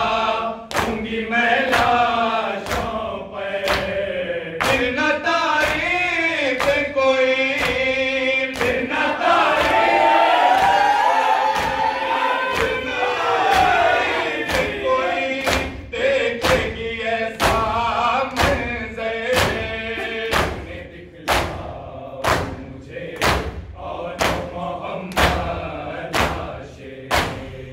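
A group of men chanting a nauha (Shia lament) in unison while beating their chests in matam: sharp, even hand-on-chest slaps about one and a half a second, keeping time with the chant. The chanting fades about twenty seconds in, leaving mostly the rhythmic slaps.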